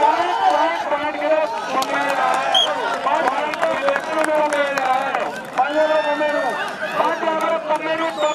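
A man's voice speaking continuously, typical of match commentary at a kabaddi game.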